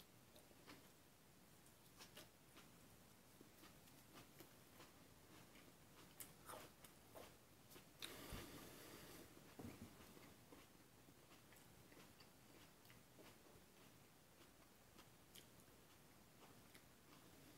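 Near silence with faint mouth sounds of a man chewing a piece of raw superhot chile pepper, small wet clicks scattered through. A brief louder noise comes about eight seconds in, with a smaller one just under ten seconds.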